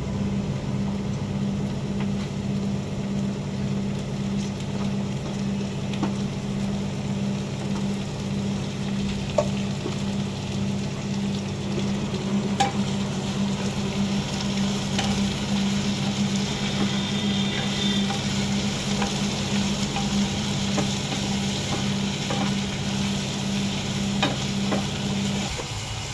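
Chukkakura (sorrel) leaves frying and sizzling with chopped onions and green chillies in a nonstick pan, stirred with a wooden spatula that ticks against the pan now and then. A steady low hum runs underneath and stops just before the end.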